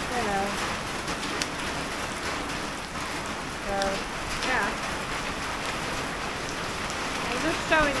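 Steady heavy hurricane rain falling on pavement and yard.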